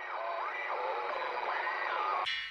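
Radio static, a band of hiss with whistling tones that slide up and down through it, like a receiver being tuned between stations.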